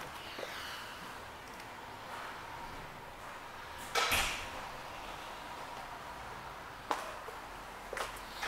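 Handling noise from a handheld camera being moved around: a click at the start, a loud scuffing knock about four seconds in and a sharp click near the end, over a faint steady high hum.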